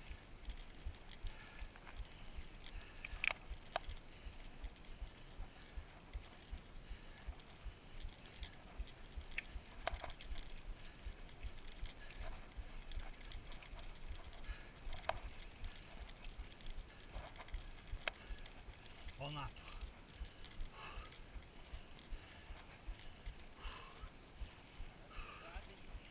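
A mountain bike rolling over a gravel dirt road, heard from its handlebars: a steady low rumble of tyres and wind on the microphone, with scattered clicks and knocks as the bike and its strapped-on handlebar gear rattle over the bumps.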